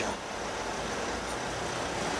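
Steady vehicle cabin noise, engine and surrounding traffic, heard from inside a vehicle creeping along in a traffic queue.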